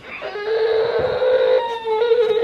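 Infant whining in one long, drawn-out cry, fussing at being spoon-fed rice she doesn't want.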